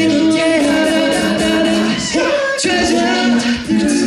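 Male a cappella group singing a pop song live through microphones: held vocal chords under a lead voice that slides between notes.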